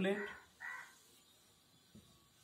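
Whiteboard marker giving one short squeak as a line is drawn, about half a second in; then only faint room tone.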